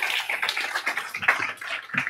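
Audience applause dying away, thinning to a few separate claps toward the end.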